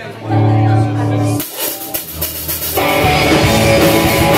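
Live punk rock band starting a song: a held guitar chord rings for about a second, then after a short break the full band comes in loud with guitars, bass and drums about three seconds in.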